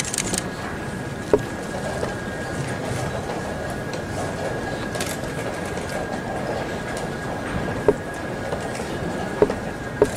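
Steady hum of a large playing hall with a faint constant high tone, broken by four or five sharp taps spread through it: chess pieces set down and chess clock buttons pressed in a blitz game.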